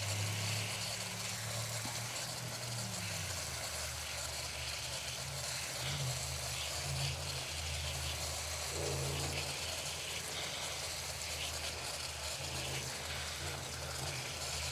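Garden hose watering wand spraying water onto the soil around a newly planted shrub, a steady soft hiss, soaking the dry soil so it settles around the roots. A low engine hum rises and falls underneath.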